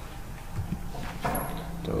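A pause in a man's narration: low background noise with a few faint short sounds, then one short spoken word at the very end.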